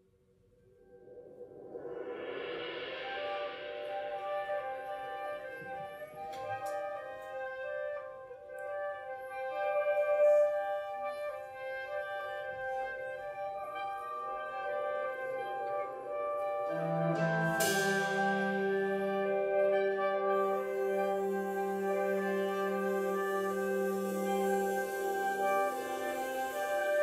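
Big band of saxophones, trumpets and trombones opening a piece with long held notes stacked into sustained chords, fading in from near silence about a second in. About two-thirds of the way through, low held notes come in under the chord.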